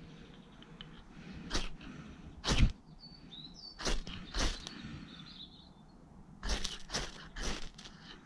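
Striker scraped down a ferro rod (fire steel) into a bundle of tinder to throw sparks, about eight quick rasping strokes at uneven intervals, the later ones coming in a fast run of four.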